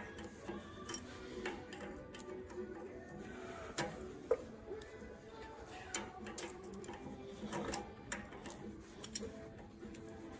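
Scattered metal clicks and knocks as tongue-and-groove pliers grip and turn the spindle nut on a greased wheel hub, the loudest a little past four seconds in, over faint background music.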